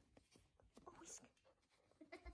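Near silence, with a few faint clicks and scratchy rustles.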